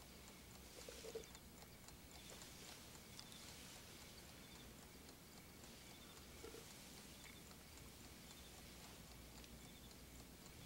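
Near silence: a bedside clock ticking faintly, with a couple of soft handling sounds about a second in and around six and a half seconds in.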